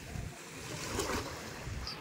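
Calm sea water lapping at a sandy shoreline, swelling a little about a second in, with wind noise on the microphone.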